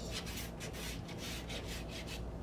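Paper record sleeve and cardboard vinyl record jacket rubbing and sliding against each other as they are handled, in a series of quick scraping strokes.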